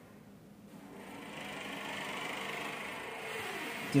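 Pen scratching across paper while drawing lines, starting about a second in and getting louder.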